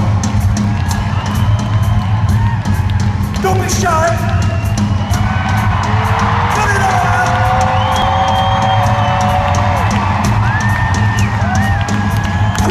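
Live rock drum solo on a full drum kit, with rapid hits and cymbal crashes over a steady low rumble in a large arena. Audience whoops and long yells ride over the drumming.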